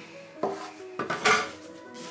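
Metal bench scraper cutting dough on a floured wooden table: short knocks and scrapes of the blade on the wood, with the loudest clatter a little after a second in, when the scraper is set down on the table.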